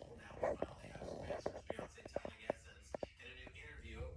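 Boxer dog making soft breathy whimpers in its sleep, with a quick run of short muffled yips in the middle: the noises of a dog dreaming.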